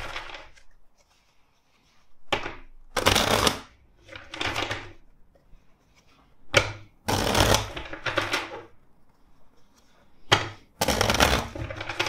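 A tarot deck being shuffled by hand, in three spells of two or three short, crisp bursts of cards sliding against each other, with quiet pauses between the spells.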